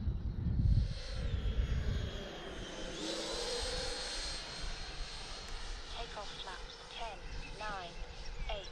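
Electric ducted fan of a 90mm F-22 model jet flying by, a high thin whine. It drops in pitch over the first couple of seconds, then about three seconds in rises again and gets louder.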